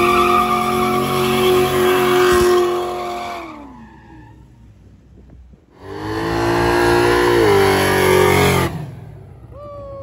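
A car engine held at high, steady revs with the tires squealing in a street burnout, fading out after about three and a half seconds. After a short lull a second burnout's engine revs high for about three seconds, drops in pitch and cuts off near the end.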